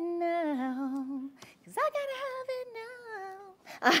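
A woman singing drawn-out wordless notes. A held note drops to a lower pitch about half a second in; after a short break a second note swoops up and slowly slides back down.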